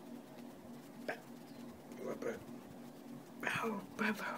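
A person's short vocal sounds and breaths, a second or so apart, the loudest one near the end before an 'oh'.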